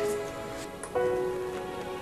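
Hot cooking oil sizzling in a frying pan on a gas stove, under background music with long held notes.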